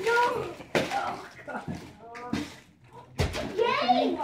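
Brief snatches of voices in a small room, with a few sharp knocks and clicks from things being handled, the loudest knock about three seconds in.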